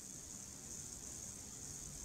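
Faint steady hiss of room tone and microphone noise, with no other sound.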